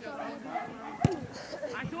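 Scattered shouts from players and the sideline on an outdoor football pitch. About halfway through comes one sharp thud, a football being kicked.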